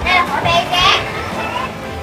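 Children's voices in a crowd of visitors, talking and calling out, with high-pitched children's calls in the first second.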